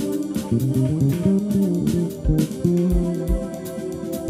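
A live band playing an instrumental number: an electric bass guitar carries a moving bass line over a drum kit, with kick-drum thumps and cymbal hits, and an electric keyboard.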